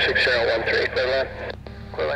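Air traffic control radio transmission: a voice over an airband radio, thin and narrow-band, addressing an aircraft by callsign and breaking off about a second in.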